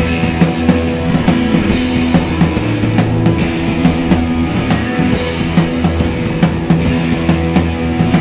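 A rock band playing live: electric guitars over a steady drum beat on a drum kit, in an instrumental passage without singing.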